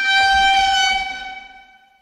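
A single held horn-like tone on one steady pitch, loudest in the first second and fading out near the end.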